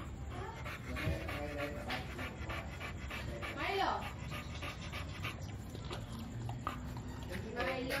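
American Bully dog panting with mouth open and tongue out, in quick even breaths. A brief pitched vocal sound rises and falls about halfway through.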